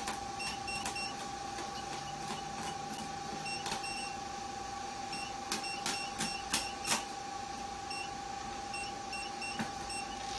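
Short high-pitched key beeps, often in quick pairs, and light clicks as the settings on a diode laser machine's touchscreen are tapped up and down, with a cluster of louder clicks about five to seven seconds in. A steady high tone from the machine runs underneath.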